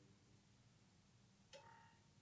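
Near silence: low room tone, broken once about one and a half seconds in by a faint, short sound with a steady pitch.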